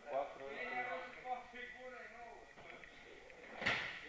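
Talk in the background, then near the end one loud thud as a thrown partner lands on the gym mats.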